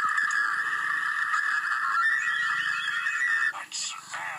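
A cartoon character's long, drawn-out yell, played on a TV and picked up muffled by a phone's microphone. It cuts off suddenly about three and a half seconds in.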